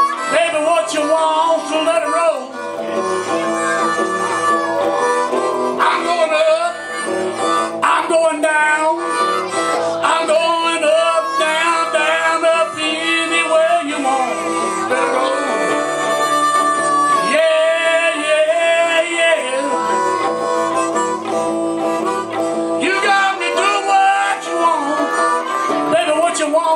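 Live blues harmonica played into a microphone, its held and bending notes over strummed electric guitar accompaniment, coming through a PA system.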